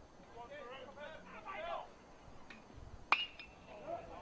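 Faint background voices, then about three seconds in a single sharp ping of a bat striking a baseball squarely, with a brief ringing tone after it.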